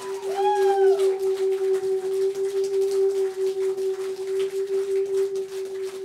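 An amplified drone held on one steady pitch with a slow pulsing, left sounding from the stage after the music stops. Over it, in the first second, come a couple of rise-and-fall whoops from the crowd.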